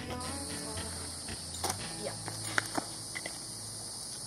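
A steady, high-pitched chorus of insects, with a few faint clicks about midway through.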